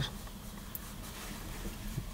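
Quiet car interior: a steady low rumble with faint rustling and light ticks of a small cardboard box being turned in the hands.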